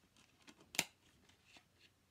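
Plastic DVD cases being handled and shifted about: a few soft clicks and rustles, with one sharper click a little under a second in.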